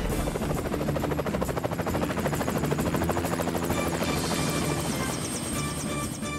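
Cartoon helicopter rotor chopping rapidly and evenly, fading after about four seconds, over background music.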